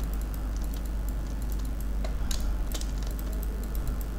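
Irregular light clicks of a computer mouse and keyboard, several a second with two louder ones a little past the middle, made while sampling and dabbing with Photoshop's Clone Stamp tool. A steady low electrical hum runs underneath.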